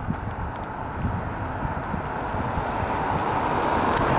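Steady outdoor rushing noise that grows gradually louder, over an uneven low rumble of wind on the microphone.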